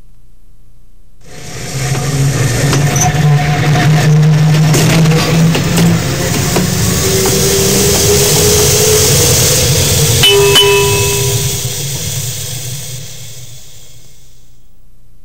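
Trolley car sound effect: a loud rolling rumble of a streetcar on rails starts about a second in, a bell dings about ten seconds in, and the sound then fades away.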